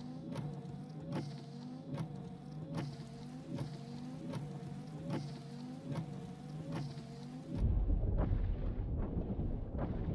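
Car windshield wipers sweeping over a steady hum, one stroke about every 0.8 s, each with a short gliding rubber squeak. Near the end a deep low rumble sets in and the sound gets louder.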